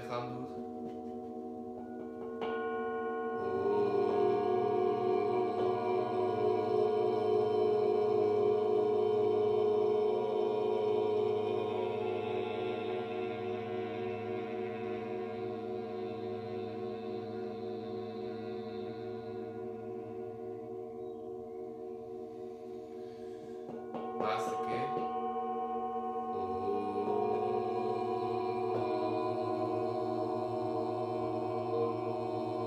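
Several metal singing bowls ringing together in sustained, overlapping tones with a slow wavering beat. Fresh bowls are struck a few seconds in, the sound swells and then slowly fades, and more bowls are sounded again about three-quarters of the way through.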